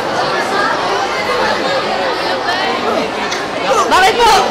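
Crowd chatter: many overlapping voices of students talking at once in a large hall, getting louder near the end.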